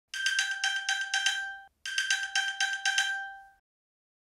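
An iPhone playing its ping alert, set off from a paired Apple Watch to locate the phone: two rounds of quick, high chiming pings, each about a second and a half long, with a short pause between them.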